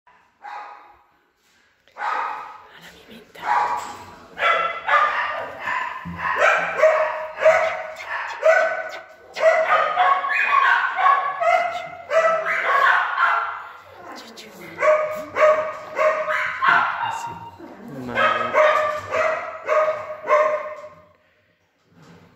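A dog making a long run of short whining, yowling calls, each rising into a held note. The calls start about two seconds in, ease off briefly in the middle and stop just before the end.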